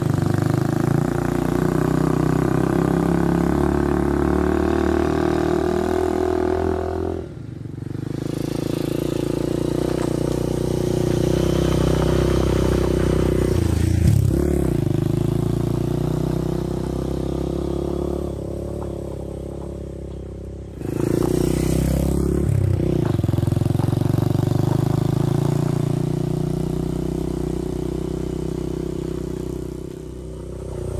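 Honda Ape 100's small single-cylinder four-stroke engine running under way, its pitch dropping and climbing again twice.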